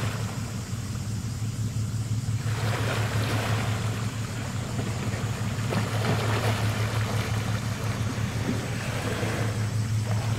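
Abukuma-class destroyer escort passing close by, a steady low drone from the ship under way. Over it, a hiss of water and wind swells and fades three times.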